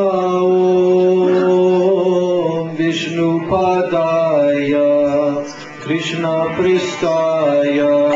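A man chanting in long, held melodic notes, the pitch stepping from one note to the next every second or two.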